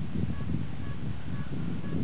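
Wind buffeting the camcorder microphone: a steady low rumble that flickers, with a few faint short high notes in the background.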